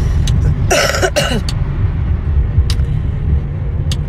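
Steady low rumble of a car cabin. About a second in, a short breathy vocal sound breaks through it.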